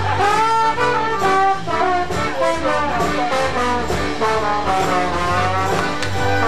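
Trombone playing a melodic line with glides between notes, backed by the band and a steady low bass line.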